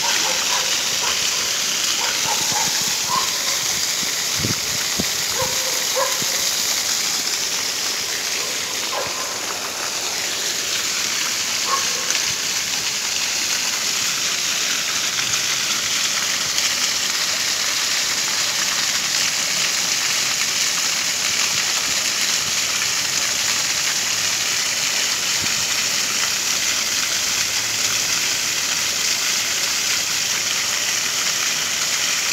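Plaza fountain jets gushing and splashing steadily onto a paved basin.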